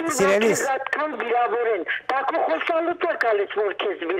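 A person talking without pause, the voice thin and cut off in the highs as it sounds over a telephone line.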